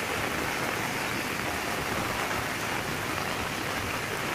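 Steady rush of fast-flowing muddy floodwater sweeping across a road, mixed with the hiss of heavy rain.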